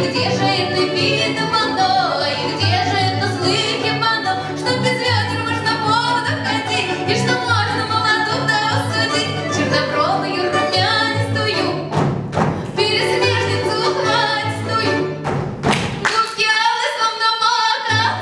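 Live Russian folk ensemble of plucked domra and gusli with a bayan, playing a lively folk song with a woman singing. Twice in the last third the band briefly breaks off, and the bass drops out near the end.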